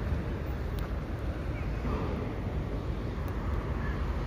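Steady outdoor harbour ambience: wind rumbling on the microphone over a wash of distant harbour and city noise.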